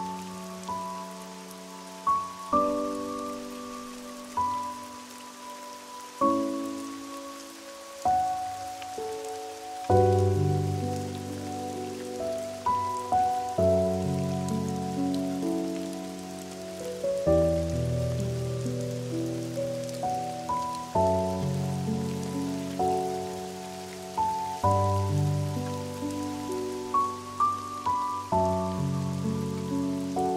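Slow, soft piano music playing over the steady hiss of rain. Deeper bass notes join the melody about ten seconds in.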